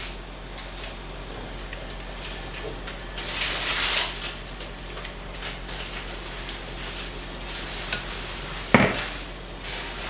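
Thick salsa pouring from a blender jar into a glass baking dish, with a louder wet splattering rush about three seconds in. Near the end comes one sharp knock as the jar is set back on the blender base.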